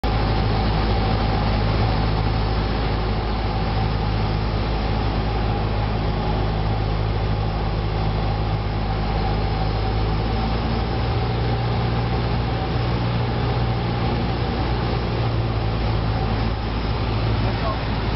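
Single-engine light aircraft's piston engine and propeller running steadily, heard inside the cockpit on final approach, with a constant low drone and airflow noise over the cabin.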